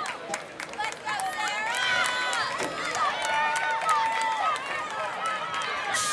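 Spectators at a track meet talking and calling out over one another, with one voice holding a long call about halfway through.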